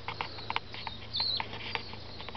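Outdoor garden ambience: a short high chirp a little over a second in, over scattered light clicks and a faint steady low hum.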